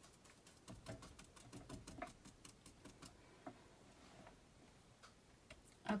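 Faint, quick irregular ticks and taps of a paintbrush working acrylic paint on a palette while mixing a colour; the taps thin out after about three seconds.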